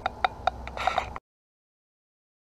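Handling noise on a handheld camera: a quick run of light clicks, about four a second, over a low hum, cutting off abruptly just over a second in as the recording ends.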